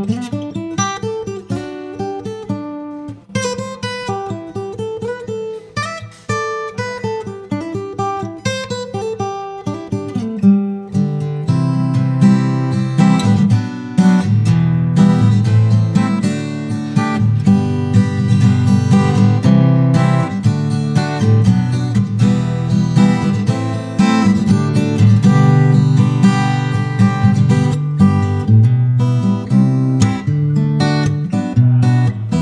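Takamine GN11MCE all-mahogany acoustic-electric guitar played fingerstyle: a sparse picked melody of single ringing notes, turning at about eleven seconds into a fuller, busier pattern with strong bass notes under the melody.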